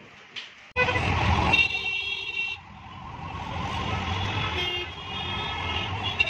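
Busy road traffic heard from inside a moving auto-rickshaw: engine rumble and road noise start abruptly less than a second in, with vehicle horns honking, first for about a second and then again near the end.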